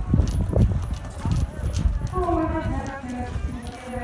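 Hooves of a Holsteiner showjumping horse striking a sand arena in dull, irregular thuds while it is ridden at a trot or canter. People's voices join from about halfway through.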